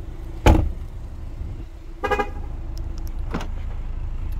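A car door, the frameless-glass door of a 2015 Cadillac ATS Coupe, shuts with one sudden thump about half a second in. About two seconds in there is a brief horn toot, and a sharp click comes near the end.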